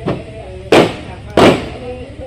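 Firecrackers going off: a small bang right at the start, then two loud sharp bangs about two-thirds of a second apart, each dying away quickly, over the voices of a crowd.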